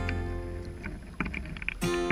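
Background guitar music drops out briefly, and in the gap water is heard splashing and rushing along the hull of a radio-controlled IOM sailing yacht, with a few short slaps. The music comes back near the end.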